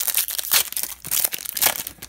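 Foil wrapper of a hockey card pack being torn open and crinkled by hand: an irregular run of sharp crackles.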